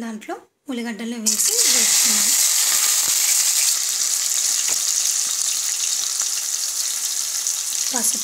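Chopped onions hitting hot oil in a steel pan: a loud sizzle starts suddenly about a second in, then settles into steady frying.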